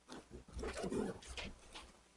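Faint rustling and soft handling noises of a Bible's thin pages being leafed through, with a soft low murmur near the middle.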